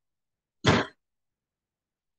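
A person clears their throat once: a single short, sharp burst about two-thirds of a second in.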